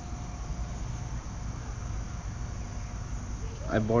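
Steady outdoor background noise: a low rumble and a continuous high-pitched hiss, with a man starting to speak near the end.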